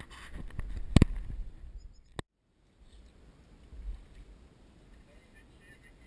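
Knocks and handling noise on a small fishing boat, the loudest a sharp knock about a second in, over wind rumble on the microphone. The sound cuts off suddenly about two seconds in, leaving only faint wind and water.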